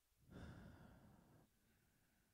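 A man's single faint breath into a close microphone, about a second long.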